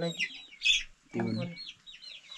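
Birds chirping: a run of short, high, falling peeps, several a second, with a short voice about a second in.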